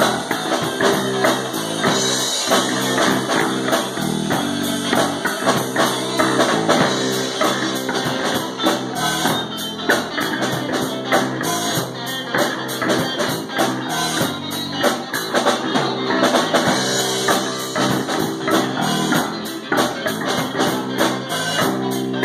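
Live rock band playing an instrumental passage: electric guitars over a drum kit, loud and steady.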